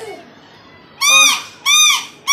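A child blowing a small plastic toy whistle in short toots, starting about a second in; each toot rises and then falls in pitch.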